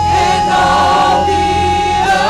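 Gospel music with a choir singing over instrumental accompaniment; one voice holds a long steady note while other voices with vibrato join in around it.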